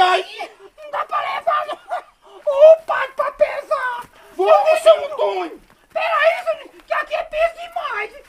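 Speech only: voices talking in bursts with short pauses, and no other sound.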